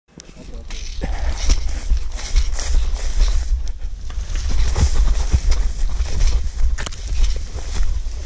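Someone moving fast on foot through tall grass: repeated swishing of stems brushing against legs and the camera, with footsteps and occasional knocks, over a constant low rumble of movement on a body-worn microphone.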